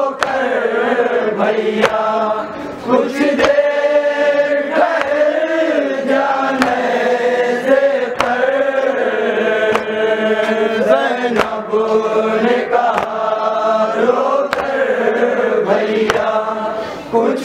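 Men's voices chanting a nauha, a Shia Urdu mourning lament, in a slow sung recitation. Sharp chest-beating (matam) slaps land about every second and a half, keeping the beat.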